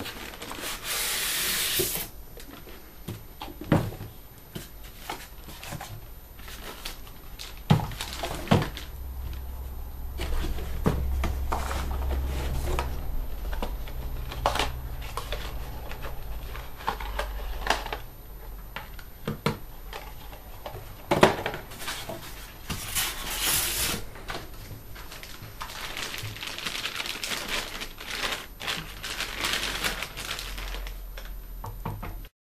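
Unboxing handling noise: cardboard box flaps and packing rustling, then plastic wrap crinkling as a DJ mixer is unwrapped, with several sharp knocks of the box and mixer against the tabletop.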